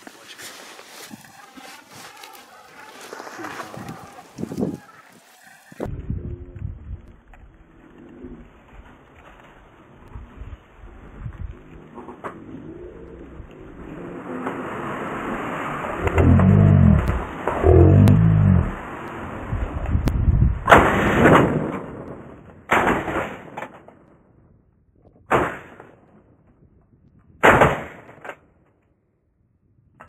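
Four shotgun shots about two seconds apart in the last third, the loudest sounds here. Before them, a steady wind-and-rustle haze on the microphone.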